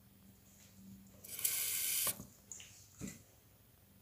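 Water running from a tap for just under a second, then two short knocks.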